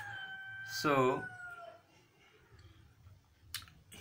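A drawn-out steady tone with overtones in the background, falling slightly in pitch and ending about two seconds in, then a single sharp click near the end.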